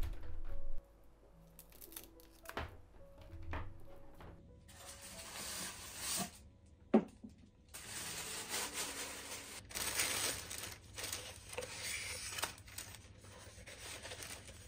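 Tissue packing paper rustling and crinkling as a wrapped object is unwrapped by hand, with one sharp knock about seven seconds in. Soft background music plays in the first few seconds.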